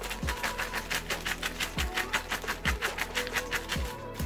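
Background music with a fast, even ticking beat, about seven ticks a second, and a few deep bass notes that drop in pitch.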